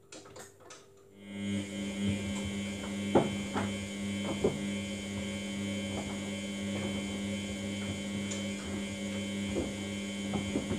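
Samsung front-loading washing machine's drum motor starting about a second in and running with a steady hum, turning the wet load in a wash tumble. A few clicks and knocks from the tumbling load sound over it.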